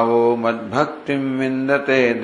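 A voice chanting a Sanskrit verse in slow, sung recitation. It holds two long syllables on a steady pitch, with a short break about a second in.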